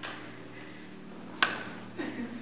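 A single sharp slap about one and a half seconds in, an apple landing in a catcher's hand, over the low sound of a quiet room.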